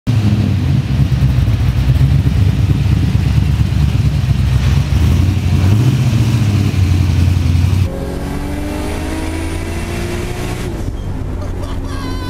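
LS1 V8 in a Nissan 240SX running with a deep, steady rumble. About eight seconds in it gives way suddenly to a quieter, slowly rising tone.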